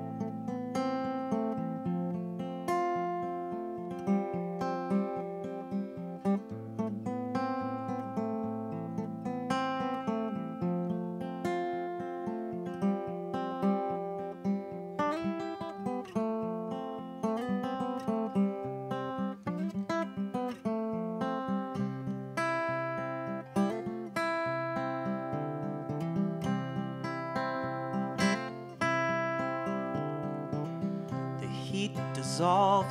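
Solo acoustic guitar played with a picked pattern of separate notes over a bass line, without singing: the instrumental introduction of a song.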